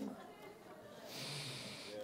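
A man's breath drawn in close to a handheld microphone, a soft hiss lasting about a second, starting about a second in.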